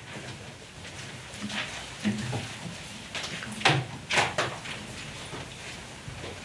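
Scattered soft knocks and rustling from rod puppets and props being handled behind a small puppet theatre as they are taken off the stage, with a few sharper knocks a little past the middle.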